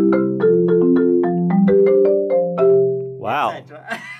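Malletech five-octave marimba played with medium-soft mallets: a quick run of lower-middle-range notes that ring on into one another, ending a little under three seconds in. A brief voiced exclamation follows near the end.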